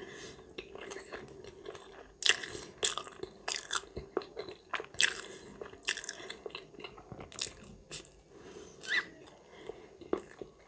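Close-miked mouth chewing crunchy food, with soft chewing at first. From about two seconds in come sharp crunches, about one or two a second, easing off near the end.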